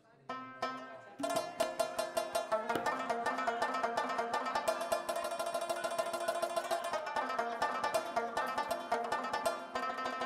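Afghan rubab playing a fast run of plucked notes. A single note sounds just after the start, and the rapid picking begins about a second in and runs on at an even level.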